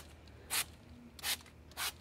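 Spray bottle squirting wheel cleaner onto a wheel: three short hissing sprays, about two-thirds of a second apart, starting about half a second in.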